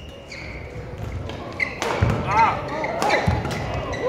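Badminton rally: a few sharp racket hits on the shuttlecock and footfalls in the second half, with short squeaks of court shoes on the floor, over a murmur of voices in the hall.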